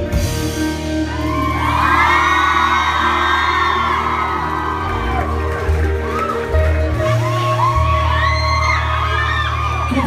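A live rock band's amplified bass and electric guitars hold long, sustained low notes while the crowd whoops and screams over them.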